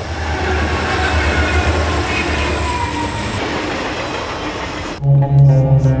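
A passenger train running past, a steady rumbling rail noise with faint whining tones sliding down in pitch. About five seconds in it cuts off and gives way to low, sustained, ominous music.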